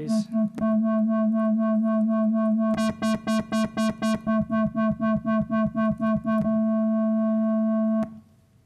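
Web Audio square-wave oscillator through a low-pass filter whose cutoff is swept by a 4 Hz sine LFO: a buzzy synth tone that wobbles about four times a second. The wobble stops for about two seconds near the start and again near the end as the values are changed. In the middle it comes back with brighter, wider sweeps.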